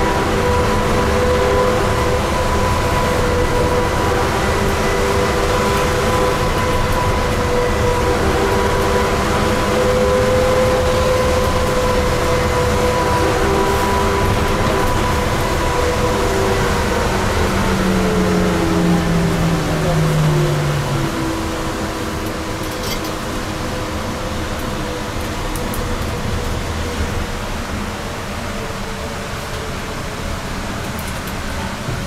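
Electric trolleybus running through a tunnel, heard from inside the cabin: a steady rumble of running and tyre noise with a steady high whine. About two-thirds of the way through, some lower tones glide downward and the sound eases slightly.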